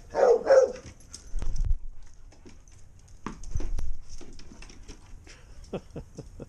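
A dog barking briefly at the start, then scattered light taps and two low thumps as the dogs play with tennis balls on the lawn and patio.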